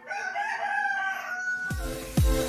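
A rooster crowing once, one held call of about a second and a half. Just before the end, electronic dance music with a heavy deep beat comes in.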